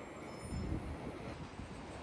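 Faint city street traffic noise as a double-decker bus drives past.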